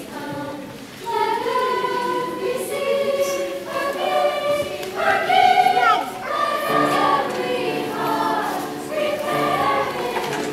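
School choir of mixed young voices singing in parts, holding notes that change every second or so. The choir drops briefly about a second in, then swells to its loudest about halfway through.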